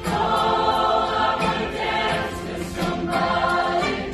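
Large youth show choir singing together in a live stage performance, many voices holding sustained notes with musical accompaniment.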